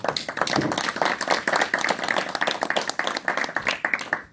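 A small group of people applauding with dense, irregular hand claps.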